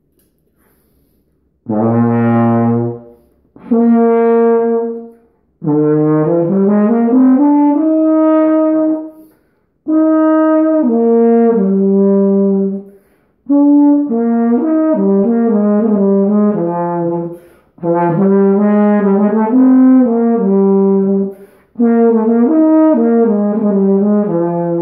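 Carl Fischer ballad horn, a valved brass horn here crooked in B-flat low pitch and played with a trombone-style mouthpiece. After a short quiet start come two separate held low notes, then several flowing melodic phrases with short breaks between them.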